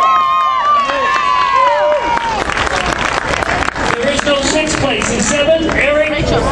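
Audience cheering, with several long high-pitched shouts held for a second or two at the start, giving way after about two seconds to steady applause and clapping.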